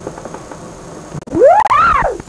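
A loud whooping call from a person's voice that swoops up in pitch twice and falls away near the end.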